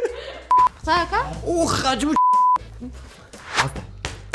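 Two bleeps of a single steady tone, the censor-style bleep laid over speech in editing: a short one about half a second in and a longer one just after two seconds in, with talk between them.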